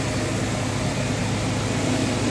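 Steady hum of city street traffic, with idling engines under a constant wash of noise.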